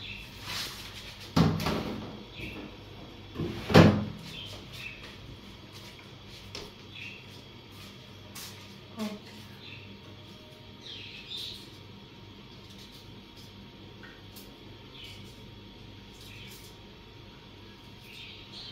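Kitchen handling sounds while ginger is crushed for tea: a sharp knock about a second and a half in and a louder one about two seconds later, then faint scattered clicks and taps of a utensil.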